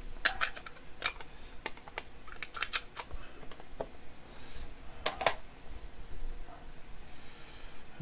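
Sharp clicks and taps of a hard clear plastic card case being handled and opened, coming in scattered small clusters, the loudest pair about five seconds in.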